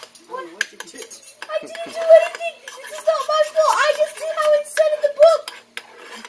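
A metal utensil scraping and clinking inside a metal ladle of burnt, hardened honeycomb sugar, in short irregular knocks and scrapes.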